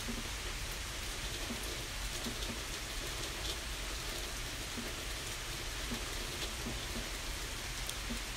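A steady, even hiss of background noise, like rain, with a few faint scattered ticks.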